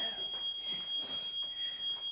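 Smoke alarm sounding one steady, high-pitched tone, set off by food burning on the stove.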